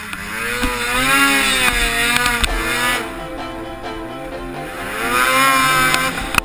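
Snowmobile engine running under throttle, its pitch climbing about a second in, dropping back, then rising again near the end as the rider accelerates across the snow.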